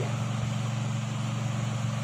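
A steady low hum over a constant background hiss, with no other events.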